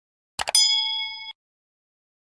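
Subscribe-animation sound effect: a quick double mouse click about half a second in, then a bright notification-bell ding that rings for under a second and cuts off abruptly.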